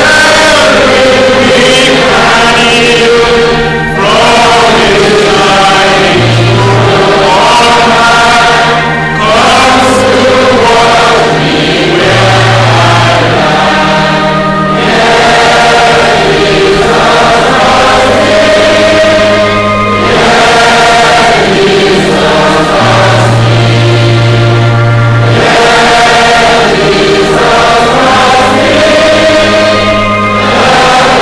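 A choir singing a gospel song over instrumental accompaniment that holds long, steady bass notes.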